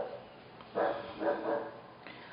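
A dog barking a few short times in the background, about a second in.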